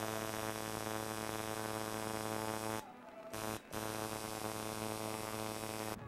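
Tattoo machine buzzing steadily as it works on skin. It cuts out briefly twice about halfway through, then runs on.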